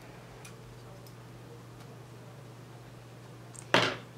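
Quiet handling of glass seed beads and a fine beading needle: a few faint small ticks over a steady low hum. A short, sharp burst of noise comes near the end.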